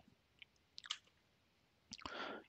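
Near silence, broken by a faint mouth click about a second in and another just before the end.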